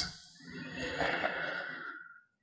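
A man's faint, long breath out close to a microphone, a soft sigh starting about half a second in.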